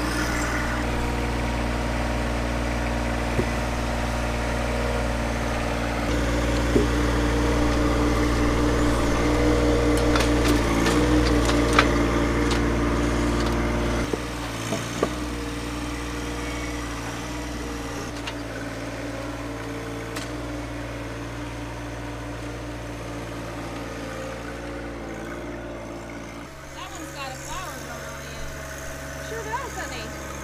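John Deere 1025R sub-compact tractor's three-cylinder diesel engine running steadily as it works with the loader grapple, with a few sharp knocks about ten to twelve seconds in. The engine grows quieter about fourteen seconds in.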